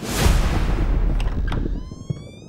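Trailer sound-design effect: a loud rushing burst of noise with a deep low end, fading about three-quarters of the way through, then a high tone with several overtones gliding upward near the end.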